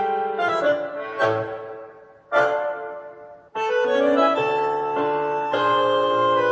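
Instrumental keyboard music: piano-like chords struck and left to ring and fade, a brief pause about three and a half seconds in, then held keyboard chords.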